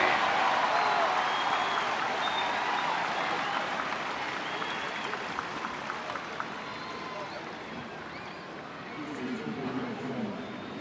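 Ballpark crowd cheering and applauding a double play, with a few whistles, dying away gradually.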